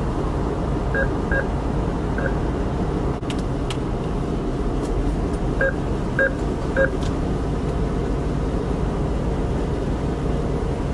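ATM keypad beeping as buttons are pressed: six short beeps, three in the first couple of seconds and three more about halfway through, with a few faint clicks between. Under it runs the steady low hum of the idling car.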